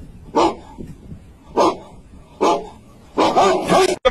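A dog barking: three single barks about a second apart, then a quicker run of barks near the end.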